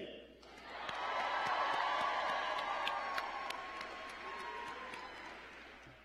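Large audience cheering and applauding in answer to a question from the podium, with scattered claps standing out. It swells up about a second in and then dies away over the following seconds.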